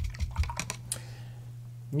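A paintbrush dabbing and tapping quickly, a run of light clicks in the first second, then stopping. A steady low hum runs underneath.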